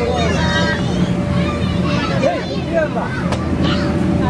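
Indistinct chatter of children and adults over the steady low hum of an inflatable bounce house's air blower.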